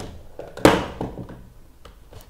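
A single loud thunk about two-thirds of a second in, followed by a few faint clicks, as the low-battery computer's power cable is plugged in.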